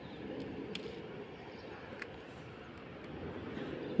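Faint, steady outdoor background noise with a couple of faint ticks.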